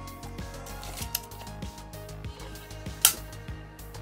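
Soft background music with light clicks and taps as a retractable tape measure is handled against a hard plastic toy spaceship; one sharp click about three seconds in.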